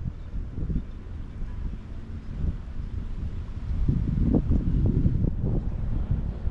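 Wind buffeting an outdoor camera microphone: an uneven low rumble that grows stronger about four seconds in.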